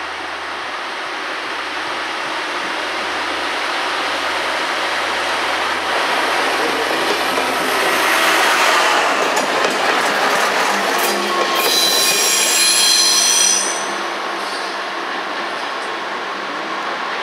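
A DB class 611 diesel multiple unit pulls away and passes close by, its engine and wheel noise growing louder as it nears. In the later half comes a high squeal of several tones lasting about two seconds, typical of wheels grinding on a curve, which cuts off sharply and leaves a lower rumble as the train moves off.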